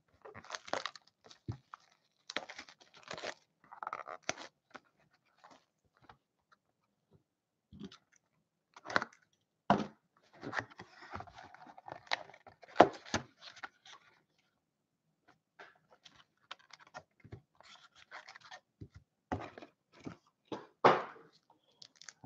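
Hands opening a cardboard SPX hockey card hobby box: scattered scrapes, taps and tearing of the cardboard. There is a quiet spell in the middle, then a denser stretch of rustling with a few sharp snaps about ten to fourteen seconds in.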